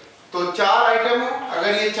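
A man speaking in a lecturing voice, starting after a brief pause about a third of a second in.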